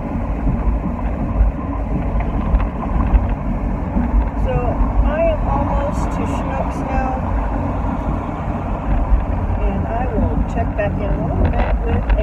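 Steady road and engine noise inside a moving car's cabin: a low, even rumble.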